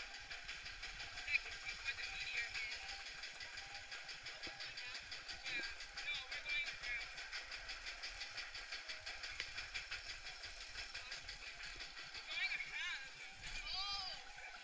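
Amusement ride vehicle running, with a fast, even ticking of about five a second, and faint voices near the end.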